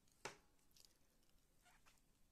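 Near silence, with one faint short click about a quarter second in and a few softer rustles: a crochet hook and yarn being worked by hand.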